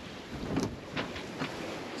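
Steady wind and water noise aboard a sailing catamaran underway, with a few faint ticks.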